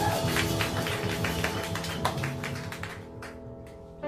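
Live jazz piano trio of piano, upright bass and drums playing, full of quick sharp drum hits over bass and piano notes. The sound thins out and gets quieter over the last second.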